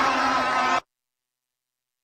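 Large rally crowd cheering over a steady droning note. The sound cuts off abruptly less than a second in, leaving dead silence: a dropout in the audio.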